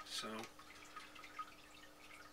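Quiet room with a steady low hum and a few faint small ticks, after one short spoken word at the start.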